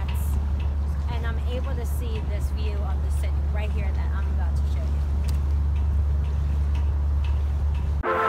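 A woman talking for the first few seconds, then falling silent, over a steady low rumble that runs unbroken underneath.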